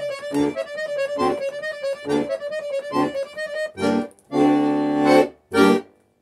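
Bayan (Russian button accordion) playing a tune: a held high note over bass-and-chord accompaniment about two beats a second, then closing on loud full chords, one held for about a second. The closing chords are the cadence in G minor.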